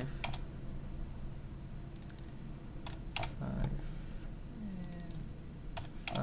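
A few sparse clicks from a computer keyboard and mouse: one just after the start, two close together about halfway through, and one near the end.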